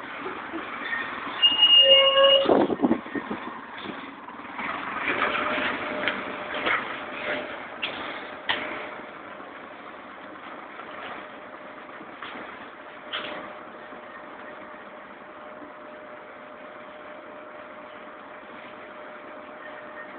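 Karosa Citybus 12M bus standing at a stop with its engine idling, heard from inside at the open front door. About a second and a half in there is a short electronic beep, followed by a loud rush of noise. Scattered knocks and clatter follow, then a steady hum.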